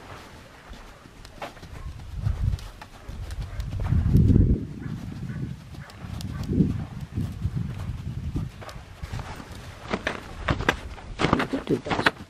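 A palomino Morgan horse's hooves thudding on soft sand as he moves around the pen in an uneven, dull clip-clop.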